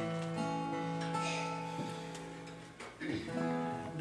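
Acoustic guitar strummed, a chord ringing out and slowly fading, then strummed again about three seconds in.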